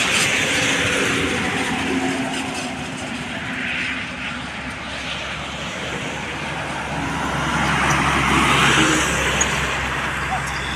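Highway traffic noise: tyre and engine noise of passing vehicles, easing off in the middle and swelling again as a truck approaches and goes past about eight seconds in.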